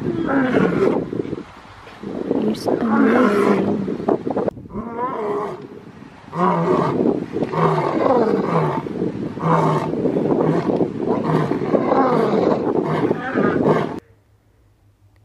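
Male lion roaring: loud roars and grunts in several bouts with short pauses between, cutting off suddenly at the end.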